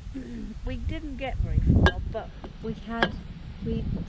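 Indistinct short bits of talking over wind rumbling on the microphone, with two sharp clicks, one about two seconds in and one about a second later.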